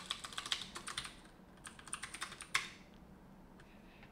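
Typing on a computer keyboard: a fast run of key clicks, a short pause, then a second run that ends about two and a half seconds in.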